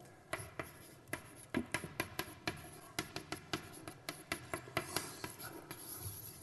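Chalk writing on a blackboard: a quick, irregular run of taps and short scrapes as letters are written.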